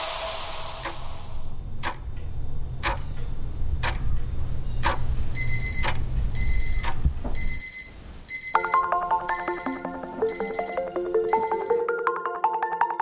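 A clock ticking about once a second, then from about five seconds in an alarm clock ringing in short bursts, once a second. A little past halfway, light music with mallet-percussion notes comes in under the ringing.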